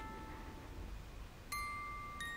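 Bell-like chiming notes of a background music score: notes already sounding fade away, and a fresh chime is struck about one and a half seconds in and rings on.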